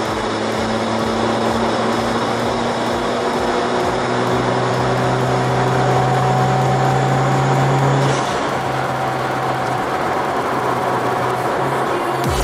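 Turbocharged Toyota 2NR-VE four-cylinder engine of an Avanza, heard from inside the cabin at highway speed, with tyre and road noise. It makes a steady drone whose pitch climbs slowly as the car gathers speed, and the drone drops off about eight seconds in.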